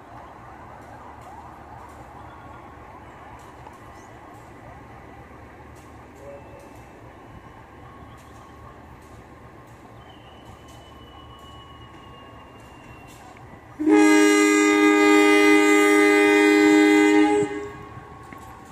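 Diesel-electric locomotive's air horn (CC203) sounding one long, loud blast of about three and a half seconds near the end, the departure signal of the train. Before it, only low steady station background.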